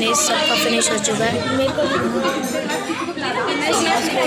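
Overlapping chatter of several people talking at once in a busy restaurant, with no single voice standing out.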